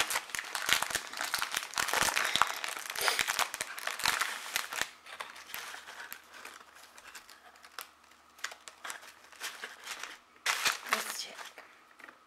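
Plastic wrapper of a Peeps marshmallow-candy package crinkling and tearing as it is opened and handled. It is dense and loud for the first few seconds, then thins to scattered rustles, with a short burst near the end.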